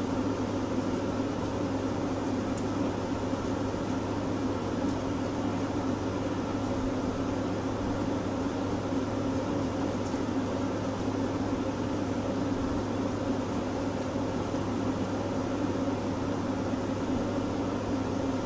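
Steady low hum of a motor-driven appliance running in a small room, unchanging in pitch and level, with one faint tick a few seconds in.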